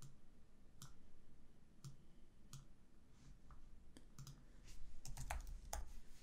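Faint, scattered clicks of a computer mouse and keyboard keys, with a quicker run of keystrokes near the end.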